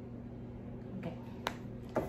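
A single sharp click about one and a half seconds in, and another just before the end, over a steady low hum.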